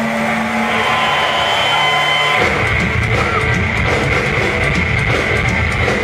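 A rock band playing live and recorded from the audience. Held, sustained notes ring at first, then the drums and full band come in about two and a half seconds in.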